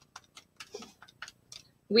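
Calculator keys being tapped: about eight quick, light clicks in a row, irregularly spaced, as a short sum is keyed in.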